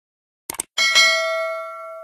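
A quick double mouse click, then a bright bell ding that rings on and slowly fades. It is the notification-bell sound effect of a subscribe-button animation.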